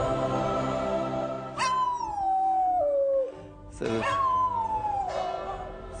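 A dog howls twice: two long howls, each sliding down in pitch. It is howling in answer to church bells, which the priest calls the dogs' way of praying.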